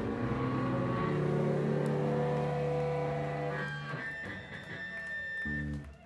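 Amplified electric guitar holding long ringing notes and chords, with no drumbeat under it. A steady high tone joins about two-thirds of the way in, and the sound drops away at the end.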